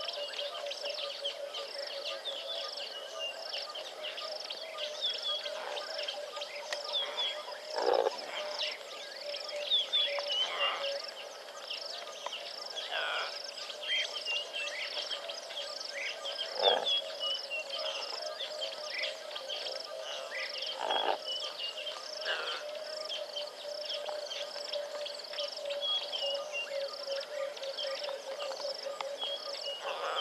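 Natural dawn chorus of wild animals: a steady low pulsing trill and a fast, even chirping, typical of insects or frogs, run throughout with birds calling over them. A few louder brief calls stand out, the loudest about 8 and 17 seconds in.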